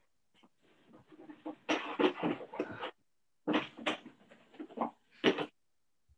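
A woman's voice vocalizing into a handheld microphone in three drawn-out bursts, the longest near the middle, with the sound cutting out almost completely between them.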